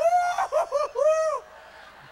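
A man's high falsetto voice imitating a woman laughing, a quick run of short rising-and-falling hoots that lasts about a second and a half and then breaks off.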